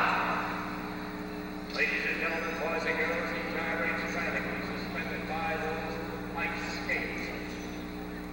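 A man's voice speaking indistinctly, in phrases separated by short pauses, with a steady low hum running underneath.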